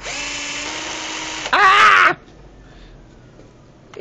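Cordless drill spinning a salvaged DC motor's shaft to drive it as a generator, a steady whine for about a second and a half. A louder burst with a wavering pitch follows for about half a second before the sound stops.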